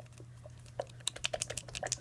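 A plastic tube of old BB cream being shaken, giving a quick, irregular run of small clicking, sloshing ticks about a second in. The product has separated into oil, which she takes as a sign that it has broken down.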